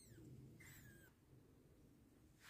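Two faint, short, high-pitched squeaks from a young animal, each falling in pitch: one right at the start, a longer one about half a second in. Otherwise near silence.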